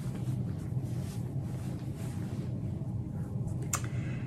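Block-printed cotton fabric rustling faintly as it is handled and folded, over a steady low room hum, with one brief sharp click near the end.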